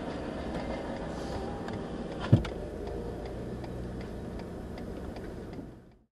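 A car engine idling, heard inside the cabin as a steady low hum, with faint regular ticking and one sharp knock a little past two seconds in. The sound fades out at the very end.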